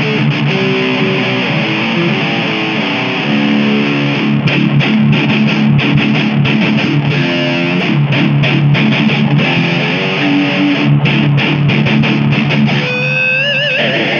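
Electric guitar playing a continuous run of sustained notes, ending on a single held note shaken with wide vibrato about a second before the end.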